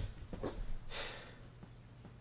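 Faint breathing: one short, soft breath out about a second in.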